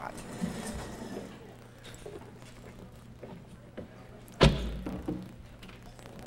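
Faint knocks and rustles of handling, then one loud thump with a low boom about four and a half seconds in, over a steady low hum.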